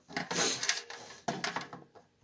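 Handling noise: rustling and scraping in the first second, then a few light clicks and knocks as wires and tools are moved about on the snowmobile.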